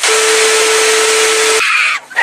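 Loud TV static sound effect: a hiss of white noise with a steady low tone under it. The hiss cuts off suddenly about a second and a half in, leaving a brief higher tone.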